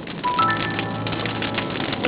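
Crackling of a wood fire burning in a fireplace, a rapid scatter of small pops and snaps, with soft background music whose held notes come in about a quarter second in.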